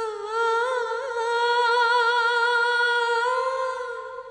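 Background score of a woman's voice humming one long held note, wavering at first and then steady, stepping slightly higher about three seconds in and fading near the end.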